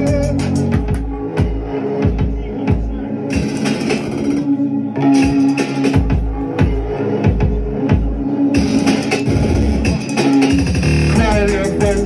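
Live band playing loud music in a small room: steady drum hits under guitar and keyboard sounds, with a voice over it. The low drums drop out briefly about four seconds in.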